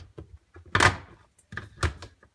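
Knocks and clunks of hard plastic dishwasher parts being handled and fitted inside the tub: a loud knock a little under a second in, another near the end, and lighter taps between.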